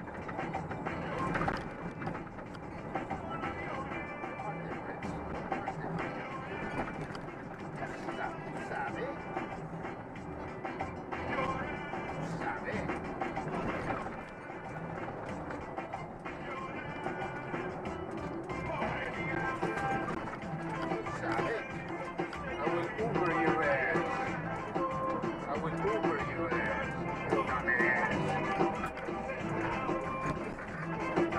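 Music with singing playing from a car radio, heard inside the vehicle's cab, getting somewhat louder and busier in the second half.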